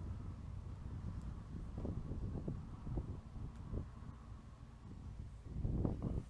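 Wind buffeting the microphone in irregular gusts over a steady low rumble of distant motorway traffic, with a louder gust near the end.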